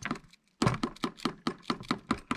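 Fingers tapping on the plastic shell of an RC car body where it has been lined with mesh tape and Flex Seal, a quick series of sharp taps. The crisp taps show how stiff the reinforced section has become.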